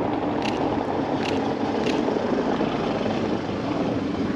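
Steady outdoor street background noise, a continuous even rush like distant traffic, with a few faint light clicks roughly every 0.7 seconds in the first half.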